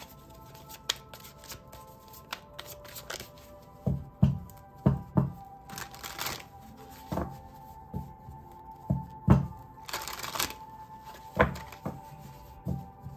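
A deck of tarot cards being shuffled by hand: a run of short taps and slaps with two longer riffling swishes, over quiet background music with steady held tones.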